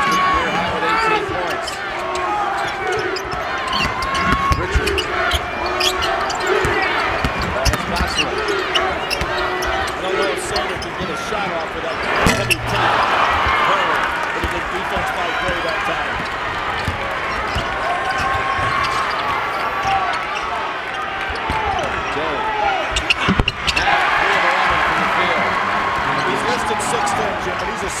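Live college basketball in an arena: a ball bouncing on the hardwood court under a constant murmur of crowd voices. About twelve seconds in and again near the end, a sharp thud is followed by the crowd noise swelling.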